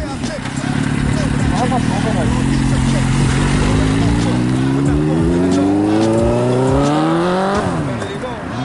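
Suzuki GSX-R 750 sport bike's inline-four engine holding steady revs, then revving steadily higher for several seconds before the revs drop sharply near the end.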